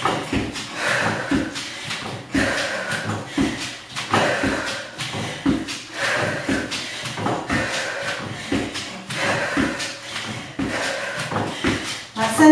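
Sneakers striking an adjustable plyo box and a hardwood floor in quick, repeated steps during box step-ups with knee drives. Heavy breathing comes every second and a half to two seconds.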